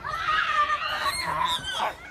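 A young child's high-pitched squeal, wavering for about a second and a half, then sliding down in pitch near the end.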